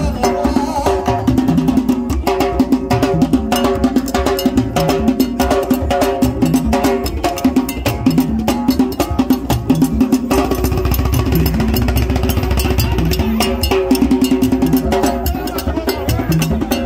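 Haitian Vodou drum ensemble: several tall wooden hand drums with lashed skin heads played together in a fast, dense, steady rhythm.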